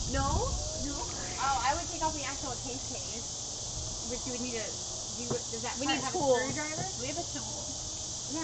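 A steady, high-pitched chorus of insects, typical of crickets at dusk, running under quiet, intermittent women's talk.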